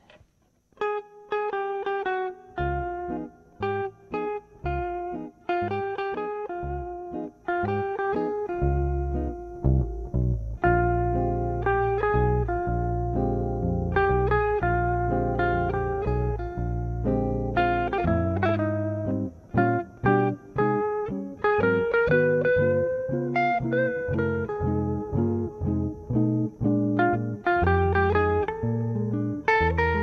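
Jazz guitar duet: an archtop guitar and a Selmer-style oval-hole guitar playing together, with quick picked lines over chords. It opens sparsely and fills out with a steady bass line from about nine seconds in.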